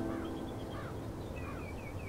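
Birds chirping, a quick series of short rising-and-falling calls repeating through the moment, over soft background music that fades out.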